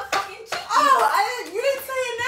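Women's voices laughing and calling out, high and rising and falling, with a few sharp hand claps.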